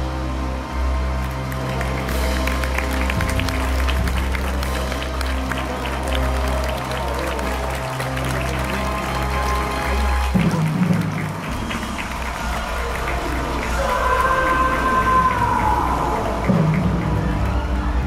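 Theatre orchestra holding a low sustained chord under audience applause; the low chord cuts off about ten seconds in, and a higher held note slides downward in the second half.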